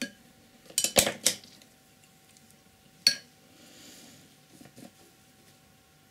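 Paintbrushes clinking against each other and hard surfaces as they are handled: a quick cluster of clinks about a second in and a single sharp clink about three seconds in.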